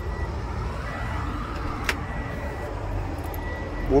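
Steady low rumble of road traffic going by, with one short click about two seconds in.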